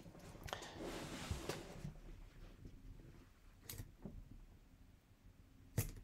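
Faint handling noise of hands pressing and rubbing on the back of a clear stamp block held down on paper. A soft rubbing lasts about a second near the start, then a few light clicks follow, the sharpest just before the end.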